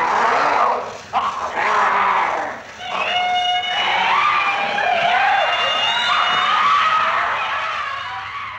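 Actors' voices on an old film soundtrack: harsh screaming and shrieking for the first couple of seconds, then several voices wailing in long, wavering cries that rise and fall.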